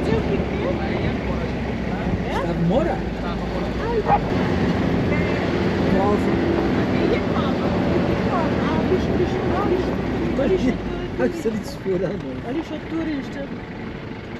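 Minibus driving on a cobblestone road, heard from inside the cabin: a steady low engine and road rumble under people chatting in the background. The low rumble fades about eleven seconds in.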